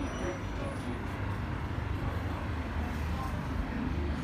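Steady low background rumble with faint, indistinct voices underneath.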